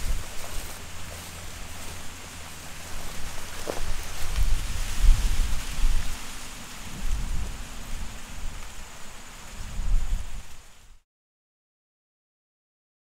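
Wind buffeting an outdoor microphone: uneven low rumbling gusts over a steady hiss, fading out about a second before the end.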